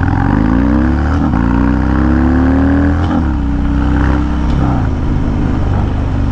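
Harley-Davidson Dyna V-twin through a Bassani Road Rage 2-into-1 exhaust, heard from the bike while riding. The engine climbs in pitch through two gears, shifting about a second in and again about three seconds in, then holds steady and eases off shortly before five seconds.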